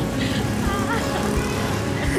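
Street traffic noise under background music, with a little laughter.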